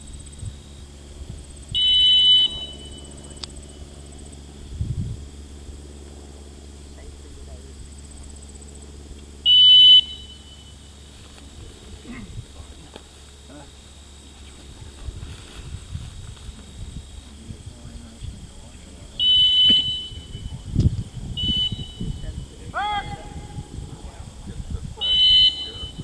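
Shrill single blasts of a retriever handler's whistle, five in all, spread several seconds apart, each about half a second long: on a blind retrieve a single blast stops the dog to take a hand cast. Near the end a brief rising call is heard between blasts.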